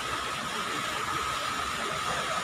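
Many small fountain jets splashing into a shallow pool: a steady hiss of falling water.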